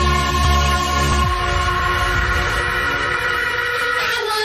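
Electronic dance music from a DJ set: a long held synth chord of many steady tones. The deep bass drops out about a second in, leaving the chord on its own as a breakdown.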